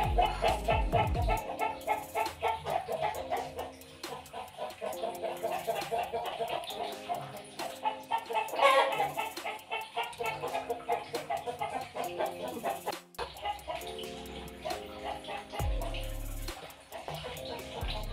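Domestic chickens clucking over and over, many short calls, over steady background music.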